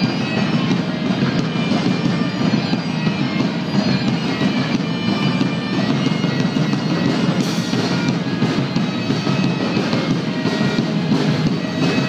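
Bagpipes playing a tune over drums and electric guitar: a folk-rock band playing live and amplified, the music running steadily without a break.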